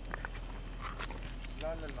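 A person's voice singing a short "la la" near the end, over a few faint scattered clicks.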